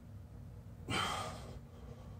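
A man's forceful, breathy exhale about a second in, lasting about half a second. It is one breath in a slow run of hard breaths from the effort of kicking up into and holding a headstand.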